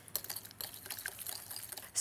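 A wire whisk beating sour cream into a runny mustard-and-vinegar mix in a glass bowl: a quick, steady run of wet clicks, with the wires ticking against the glass.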